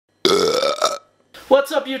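A man's burp, about three-quarters of a second long, rising a little in pitch.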